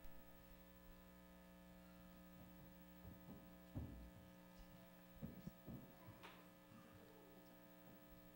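Near silence: a steady electrical mains hum, with a few faint knocks around the middle.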